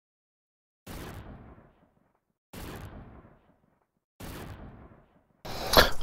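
Three identical impact hits from an edited-in intro sound effect, evenly spaced about 1.7 seconds apart; each starts sharply and dies away in a short fading tail. A louder, denser sound begins just before the end.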